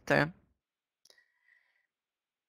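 The tail of a woman's word, then near silence broken about a second in by faint computer-mouse clicks and a short, faint high tone.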